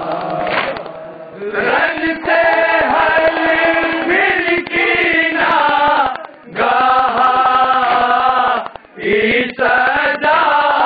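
A group of men chanting a nauha, a Shia mourning lament, together in long held notes, with a steady rhythmic beating under it from matam, hands striking chests. The chant breaks off briefly twice between phrases.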